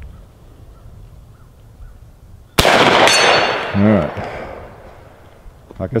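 A single shot from a Marlin 1894 Cowboy lever-action rifle in .45 Colt, about two and a half seconds in, its report echoing and dying away over about a second.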